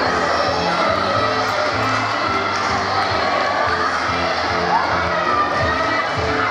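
Music playing steadily, with a crowd of spectators cheering and shouting over it.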